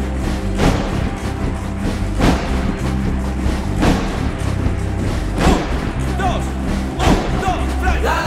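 Live band playing an upbeat instrumental passage on drum kit and electric bass, with a steady beat of heavy drum hits and a held bass line.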